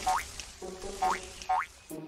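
Cartoon soundtrack music cue with three quick upward-sweeping sound effects: one near the start, then two more close together about a second in.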